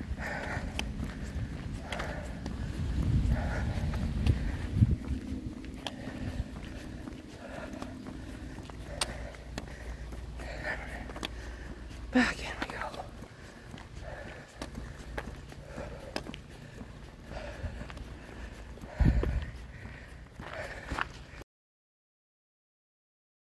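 Footsteps of a person walking at a steady pace along a trail, short regular steps over a low rumble. The sound cuts off just before the end.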